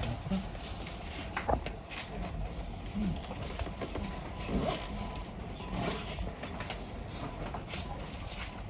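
Low room background with a few faint, short voice fragments and scattered soft clicks and rustles; no single sound stands out.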